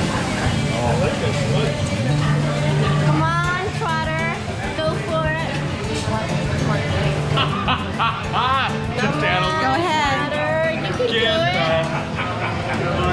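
Background music with a steady bass line, with bursts of laughter and excited exclaiming from several voices at a table, mostly a few seconds in and again in the second half.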